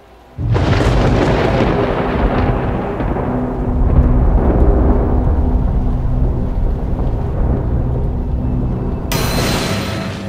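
A loud thunderclap breaks about half a second in and rolls on as a long low rumble with rain, during a storm that has knocked out the power. A second sharp burst of thunder comes near the end.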